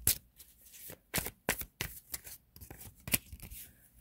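A deck of tarot cards being shuffled and handled by hand: irregular sharp snaps and flicks of the cards, several in quick succession about a second in and another near three seconds.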